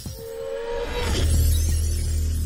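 Logo intro sting: music with sound effects, a short held tone followed by a deep bass swell about a second in.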